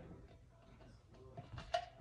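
A near-quiet pause with faint room tone, then a few faint small clicks and a brief faint sound in the last half second.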